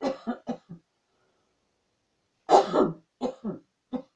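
A person coughing: a quick run of three or four coughs at the start, then a louder run of coughs about two and a half seconds in, and one more at the very end.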